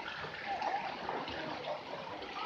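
Shallow pool water splashing and running steadily around a toddler wading in a children's wading pool.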